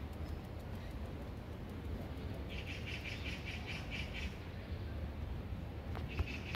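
A bird chirping in a quick run of about nine short high notes, some five a second, starting a little before halfway through and stopping after about two seconds, over a low steady rumble.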